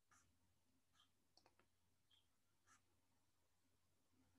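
Near silence, with faint taps and short scratches of a stylus writing on a tablet screen, about half a dozen strokes, over a faint low hum.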